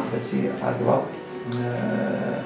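A man speaking Amharic in short phrases over steady background music.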